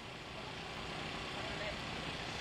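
Steady outdoor city background noise of distant traffic on an open live microphone.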